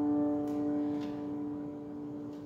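Acoustic guitar's final chord ringing out and slowly fading at the end of a song. Two faint clicks come about half a second and a second in.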